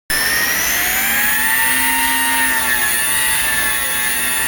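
HCP100S micro RC helicopter flying: a high, steady whine from its motor and rotors that climbs slightly in pitch during the first second or so and then holds.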